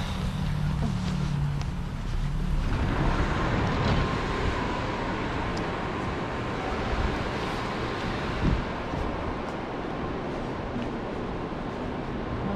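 Low outdoor rumble of traffic and wind on the microphone. About three seconds in, it gives way to a steady, even rushing of a large building's ventilation, with a faint steady hum in it.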